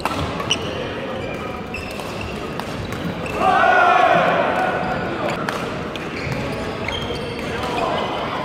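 Badminton rally in a large gym hall: sharp racket hits on the shuttlecock and shoe impacts on the floor, over background chatter. About three and a half seconds in, a loud voice cries out for about a second as the rally ends.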